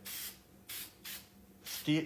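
Aerosol can of Krylon matte finish spraying in four short hissing bursts, sealing pan pastel powder onto a deer mount's lip.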